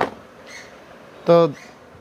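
A single sharp tap right at the start, from hands working the lead wires on a freshly rewound motor stator in its aluminium housing, followed by faint steady background noise.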